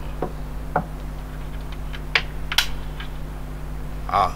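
Steady low electrical hum in the recording, with a few faint scattered clicks and taps.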